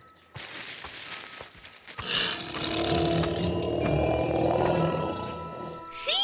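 A low, rough cartoon dinosaur roar over background music, starting about two seconds in and lasting several seconds.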